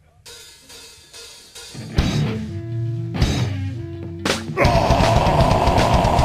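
A live metal band opening a song: a few separate drum and cymbal hits over held bass and guitar notes, then about four and a half seconds in the full band comes in loud with distorted guitars and pounding drums.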